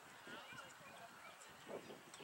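Faint, distant voices of players and spectators calling out across an outdoor soccer field, with a brief louder muffled patch near the end.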